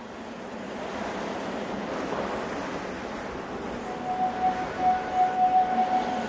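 Commercial soundtrack intro: a steady wash of noise that slowly builds, with a single held tone joining about four seconds in.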